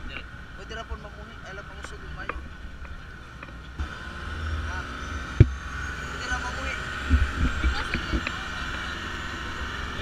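Wind buffeting an action camera's microphone over a speedboat's motor running steadily, louder from about four seconds in. A single sharp knock about five and a half seconds in; voices faint in the background.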